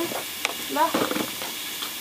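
Food sizzling in a wok over a wood fire, a steady faint hiss, with one sharp click of a utensil or pan about half a second in.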